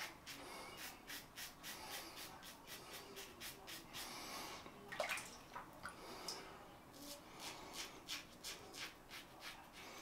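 Fatip Piccolo open-comb double-edge safety razor scraping through lathered stubble in short, quick strokes, several a second. Near the middle the strokes stop for a brief rush of water and one sharp knock, then start again.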